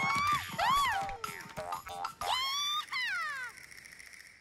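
Cartoon soundtrack: a string of swooping tones that slide up and down in pitch, over light music.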